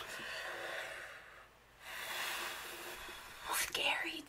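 A person's soft, breathy whispered muttering, with a short pause partway through.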